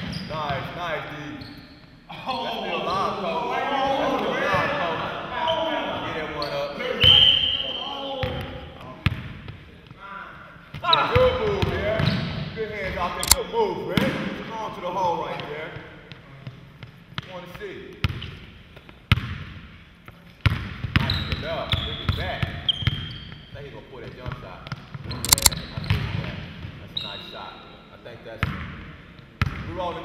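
A basketball bouncing and being dribbled on a hardwood gym floor, with irregular sharp thumps, and people talking over it at times.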